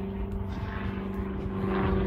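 A steady, even engine hum with a low rumble beneath it.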